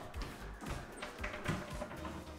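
Background music, with about three soft taps and thuds as tall wooden cabinet doors are pressed to release their push-to-open latches and swing open.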